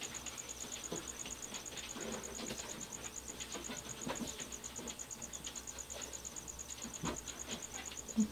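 Quiet room tone: a faint high-pitched whine pulsing several times a second, a low hum and a few scattered soft clicks.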